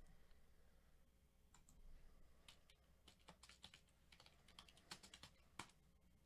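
Faint computer keyboard typing: a few scattered keystrokes, then a quicker run of them in the second half.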